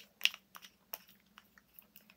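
A few small clicks and taps, the loudest about a quarter of a second in, from handling the Pinflair glue gel on the work surface as it is pushed back up and closed so it doesn't dry out.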